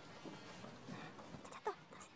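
A short animal call with a quickly falling pitch near the end, over faint background noise.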